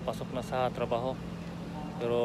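A man's voice repeating "hang, hang" syllables for about the first second, then stopping, over a steady low hum.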